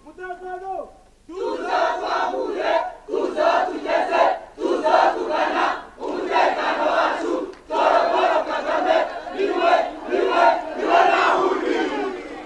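Large rally crowd chanting in unison, the many voices rising in repeated shouts about every second and a half, after a brief single call right at the start.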